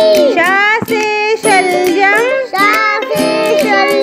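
A children's Hindi alphabet song: a high, child-like voice singing over backing music, moving from one letter-word to the next.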